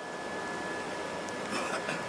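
Electric pedestal fan running, a steady rush of air with a faint steady whine on top. A brief faint rustle comes near the end.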